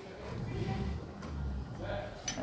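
Low rumble of handling noise as a hand tool is tried on the cylinder screws of a Stihl MS 660 chainsaw.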